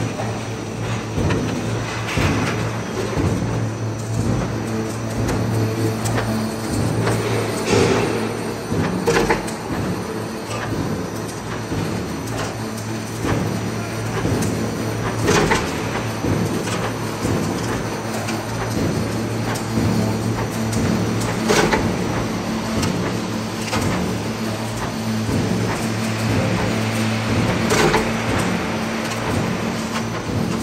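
Roll forming machine running as it forms sheet metal into octagonal roller-shutter tube: a steady motor hum, with the strip rattling through the forming rollers and sharp metallic knocks now and then.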